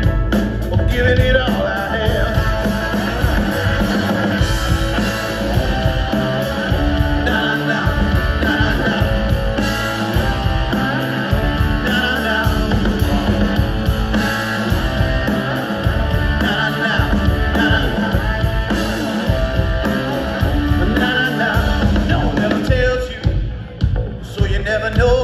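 A rock band playing live through a concert PA, with electric guitars, bass and drum kit keeping a steady beat. The music dips briefly near the end.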